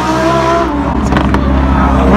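Lamborghini Huracan Performante's V10 engine at high revs, its pitch falling away as the car loses control and spins. A few short sharp cracks follow about a second in.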